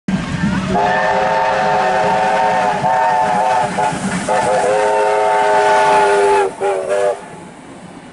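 Steam locomotive's chime whistle sounding several notes at once as the train passes: a long blast, a short break, a second long blast, then a short final toot. Under it is the steady noise of the passing train, which carries on more quietly once the whistle stops.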